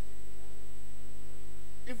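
Steady electrical mains hum with a thin high whine over it. A man's voice begins right at the end.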